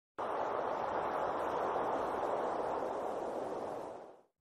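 Steady rushing wind, fading out near the end.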